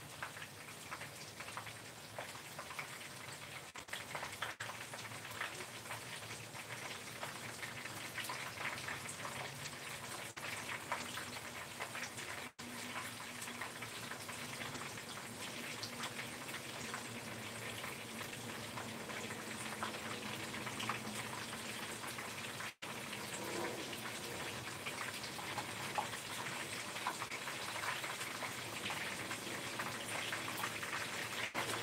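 Battered food frying in a pan of hot oil: a steady sizzle full of small crackles and pops, growing slightly louder as it goes.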